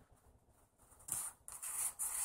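Near silence for about a second, then faint rustling and sliding of trading cards being handled in the hands.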